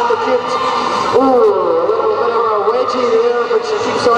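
An announcer talking over the public-address system, the words indistinct.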